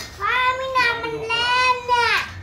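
A young child's high-pitched voice calling out in two long, drawn-out sing-song notes, the second starting to fall in pitch near the end.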